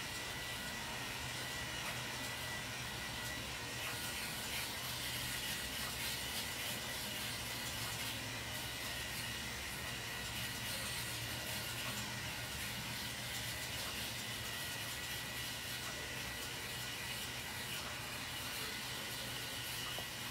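Steady background hiss with a low hum and a faint thin high tone, unchanging throughout, with no distinct sound events.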